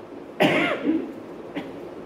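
A man coughing into his hand close to a microphone: one sharp cough about half a second in, followed by two smaller ones.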